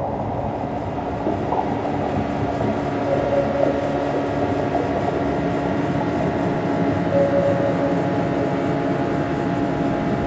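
Steady droning of a boat's engine, laid on as a sound effect, with a constant low hum that grows a little louder after about three seconds.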